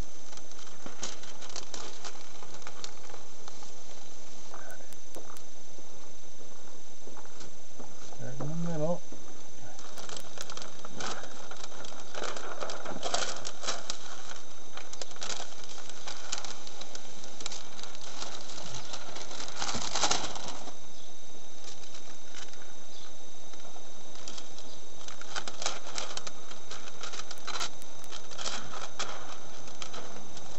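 Plastic window tint film being handled and pressed onto wet glass: scattered crinkling and crackling in clusters, loudest about 20 seconds in, over a steady hiss.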